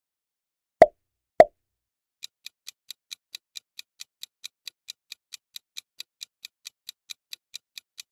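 Quiz-video sound effects: two short pops about half a second apart near the start, then a countdown timer ticking steadily at about four to five ticks a second.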